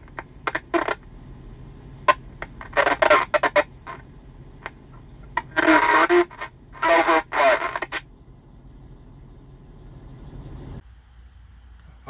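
Muffled, garbled voice coming over a CB radio's speaker in short broken bursts, sent through a worn-out old Cobra hand microphone, over a steady hum of truck and radio background noise. The hum stops near the end.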